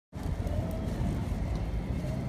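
City street background noise: a steady low rumble of traffic.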